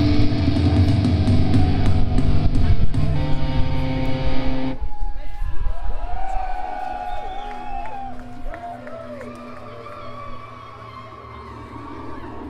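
A black metal band playing loud, distorted electric guitars, bass and drums live, the song stopping abruptly about five seconds in. Then come scattered shouts and cheers from the audience, with some lingering ringing from the amplifiers.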